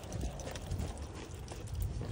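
Footsteps of a person walking outdoors, a few irregular soft steps over a steady low rumble on the phone's microphone.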